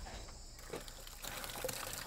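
Cow blood being poured from a plastic bucket into a small container, the stream starting a little over a second in.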